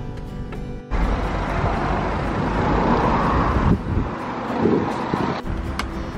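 Road vehicle noise: a loud, steady rush that starts abruptly about a second in and drops away shortly before the end.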